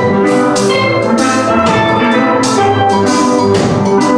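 Steel drum band playing a slow reggae tune, many pans ringing out struck notes together, with a drum kit's cymbal strokes keeping the beat.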